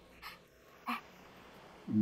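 Mostly quiet room with two short, faint breaths, then a woman's soft breathy laugh near the end.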